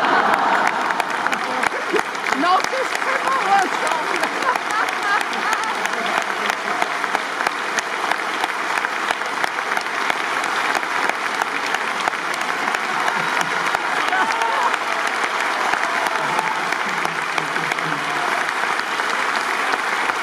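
A large opera-house audience applauding steadily, with a few voices calling out in the crowd.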